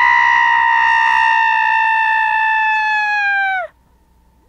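A single long, high-pitched shriek held at almost one pitch for over three seconds, sagging slightly, then sliding down and cutting off near the end.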